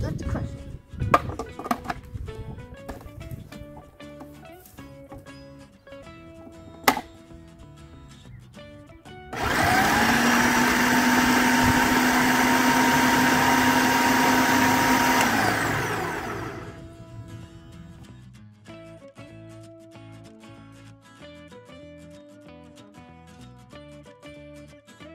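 Electric food processor running for about six seconds, chopping ripe mango pieces into pulp. It spins up quickly, holds a steady hum, then winds down. A few clicks and knocks come before it, the sharpest about seven seconds in.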